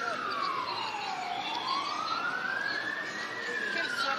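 Siren of a motorcade escort vehicle sounding a slow wail: its pitch falls steadily, climbs back up over about two seconds, and starts to fall again near the end.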